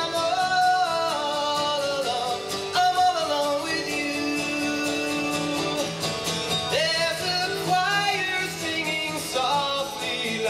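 A man singing a country-folk song into a microphone, accompanying himself on a strummed acoustic guitar.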